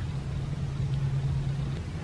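A low, steady hum that stops shortly before the end, over a faint low rumble.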